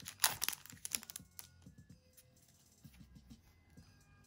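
A foil trading-card booster pack is torn open with a loud, crackling rip in the first half second. Soft clicks and taps follow as the cards are slid out and handled, fading out after about three seconds.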